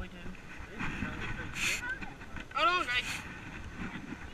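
Indistinct voices with a short, higher-pitched call about two and a half seconds in, over light wind noise on the microphone.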